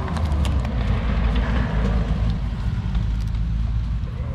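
Steady low rumble of wind buffeting the microphone in an open field, with a few faint clicks from hands handling a plastic snake-trap container.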